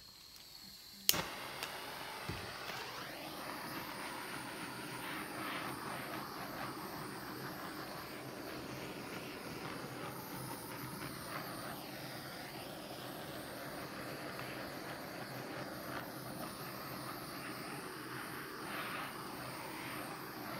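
Handheld gas torch starting with a sharp click about a second in, then its flame hissing steadily as it is passed over wet epoxy resin to pop the surface bubbles.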